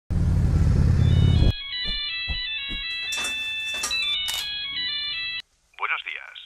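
A loud motorcycle rumble cuts off after about a second and a half. A mobile phone ringtone follows: a chiming electronic melody of overlapping high notes that stops abruptly. Just before the end, a voice starts speaking through a telephone line.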